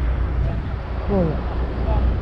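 Steady low hum of a stationary city bus's engine idling in neutral, with the handbrake on.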